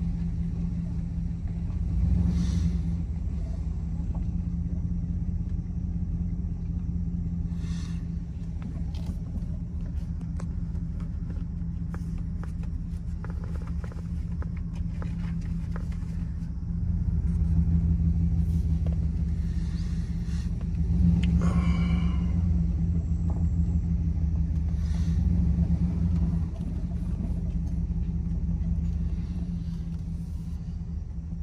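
Truck engine running at low speed, heard from inside the cab, with scattered knocks and rattles as it bumps over a rough dirt road. The engine grows louder for several seconds past the middle, then eases off.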